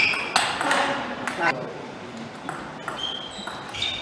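Table tennis play: short high squeaks from shoes on the court floor and the sharp clicks of the ball off bats and table. About half a second in there is a burst of voices.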